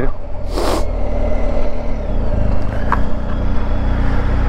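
BMW R1250 GS Rallye's 1254 cc boxer-twin engine running steadily at low road speed, heard from the rider's helmet. There is a brief rush of noise about half a second in, and the engine note changes about two seconds in.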